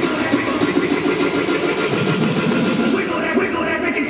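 Music for the dance routine, mixed with the voices of a crowd in a gymnasium; the top end of the sound thins out about three seconds in.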